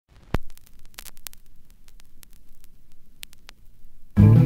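Vinyl record surface noise in the lead-in groove of a 7-inch single: scattered clicks and pops over a faint hiss and a low hum, with one loud pop near the start.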